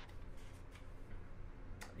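A quiet pause with a steady low hum and a few faint, soft clicks.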